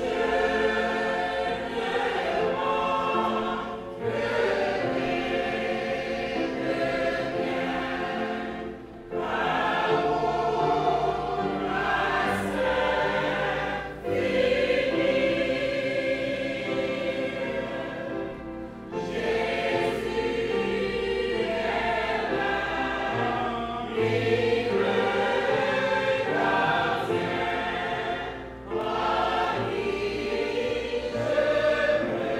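Large church choir singing together, in long sustained phrases broken by brief pauses about every five seconds.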